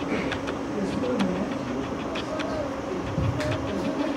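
Low, indistinct voices in the room, with scattered short clicks and knocks.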